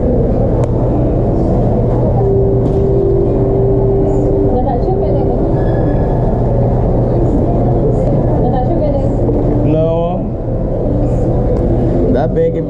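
Muffled, indistinct voices and general hubbub of a busy indoor space over a steady low hum, with a brief rising voice-like sound near the end.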